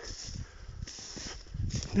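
Footsteps of a person walking over snowy forest ground, with rustling and irregular low thumps.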